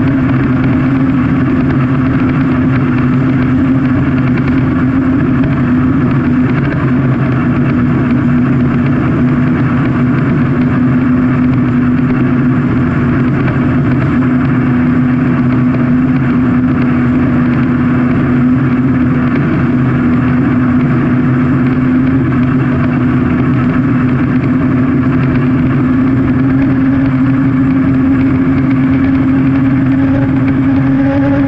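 An unlimited hydroplane's Lycoming T55 turbine engine running at full racing speed, a loud, steady, even tone mixed with rushing wind and water spray from the hull, heard onboard right beside the exhaust.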